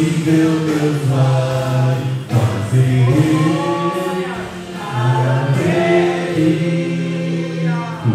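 A man singing a worship song into a handheld microphone, amplified over the church PA, in long held notes with short breaks about two and four and a half seconds in.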